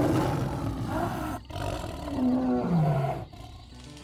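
A lion roaring twice, the second roar falling in pitch and trailing off, used as the roar of Smilodon, the sabre-toothed cat, whose tongue bones indicate it roared like a lion.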